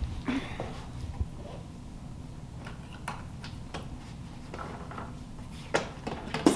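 Light clicks and knocks of an electric pressure canner's lid being turned out of its locked position and lifted off, with a sharper knock near the end, over a faint steady low hum.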